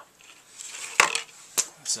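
Clear plastic CPU clamshell being handled: a sharp plastic click about halfway through and a second click a little later, with light rustling between.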